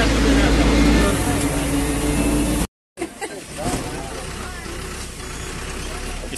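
Bus engine running under way with road noise, heard from inside the cab; the sound cuts out nearly three seconds in, and then a quieter engine hum carries on inside the crowded bus with passengers' voices.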